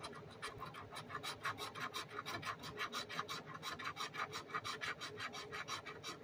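Scratch-off lottery ticket being scraped off with a fingertip: rapid, even scraping strokes, about six a second.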